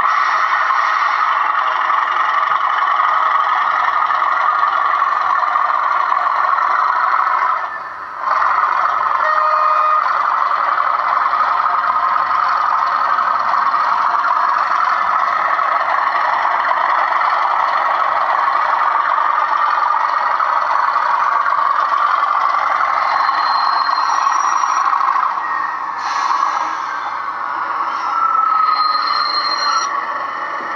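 OO gauge Class 37 model diesel locomotive running along the track onto the turntable: a steady noise from its motor and wheels on the rails, with a brief dip about eight seconds in.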